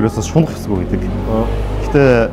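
A man speaking in conversation, over a steady low rumble.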